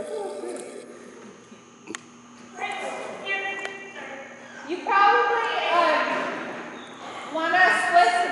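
A woman's voice calling out wordless, high, sing-song cues and praise to a dog during an agility run, in three bursts with pauses between. There is a single sharp knock about two seconds in.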